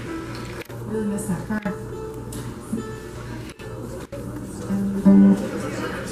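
Acoustic string band's guitar and other plucked strings sounding scattered notes rather than a running tune, over a steady low electrical hum; one louder note rings out about five seconds in.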